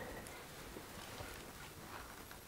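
Faint room tone in a pause of speech, with a few soft ticks.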